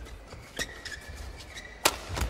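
Badminton rally: rackets striking the shuttlecock with sharp cracks, one about half a second in and a louder one near the end, with shoe squeaks and footfalls of players moving on the court.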